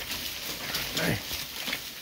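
A deer caught by its head in a wire fence, giving one short falling bleat about a second in.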